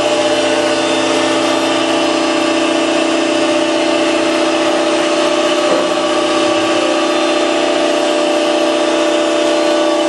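Clark horizontal baler's hydraulic power unit running, a 7.5-hp three-phase electric motor driving the hydraulic pump as the ram moves the platen through the chamber. A steady, loud hum with a strong even tone.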